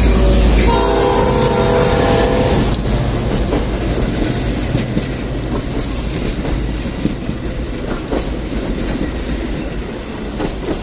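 Commuter train passing close by, sounding one horn chord about a second in that lasts about two seconds, over the deep rumble of the train. Afterwards its wheels clatter over the rail joints while the sound slowly fades.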